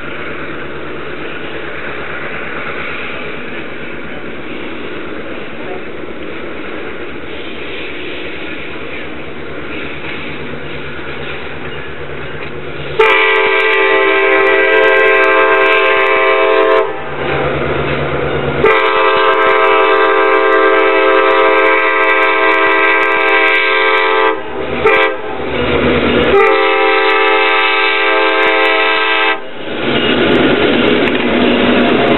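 Diesel locomotive running as the train approaches, then its multi-chime air horn sounds long, long, short, long: the grade crossing signal.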